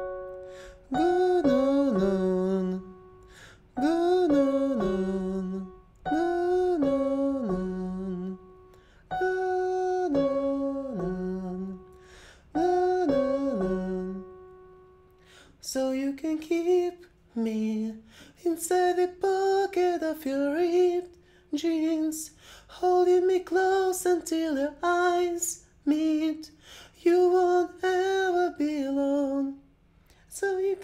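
A male voice sings a vocal warm-up exercise on 'guun-nuun' over an 8-5-1 scale pattern: five phrases of about two seconds each, every one ending on a low held note. In the second half come shorter, quicker sung phrases.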